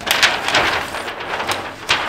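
Large paper plan sheets rustling and crackling as they are handled and flipped over, with a few sharp crinkles, the sharpest near the end.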